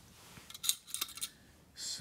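Small metal clicks and taps from a metal lightsaber hilt being handled, a few sharp ones about half a second to a second in.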